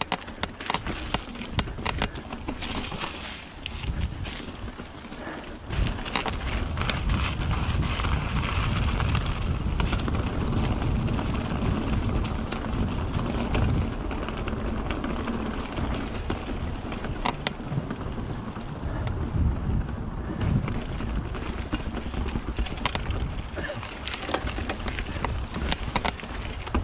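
Commencal Meta mountain bike ridden fast down a rough forest singletrack: a steady low rumble of tyres over dirt, roots and cobbles, with frequent rattling clicks and knocks from the bike. The rumble grows louder about six seconds in.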